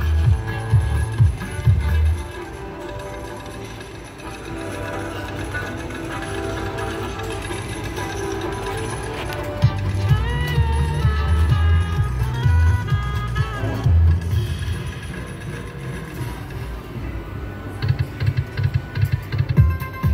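Video slot machine playing its electronic bonus-round music and win jingles, with a bass beat and a run of stepping chime tones about ten to thirteen seconds in.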